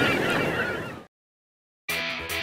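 The tail of a channel-logo jingle with short cartoon chirping glides, fading out over about a second. Dead digital silence follows, then strummed guitar music starts just before the end.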